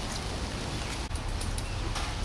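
Steady wind noise rumbling and hissing on the camera microphone outdoors, with a brief dropout about halfway through.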